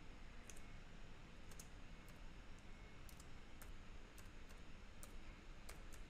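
Faint keystrokes on a computer keyboard as a line of code is typed: about ten irregular, sparse clicks, over a low steady hiss.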